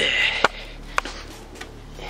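A short exhale, then a loose car wheel and tyre being handled and moved on a concrete driveway: a few sharp knocks, the loudest about half a second in and another about a second in.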